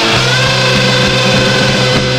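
Hardcore punk recording: distorted electric guitar, bass and drums playing together, with one long note held steady over the band from just after the start.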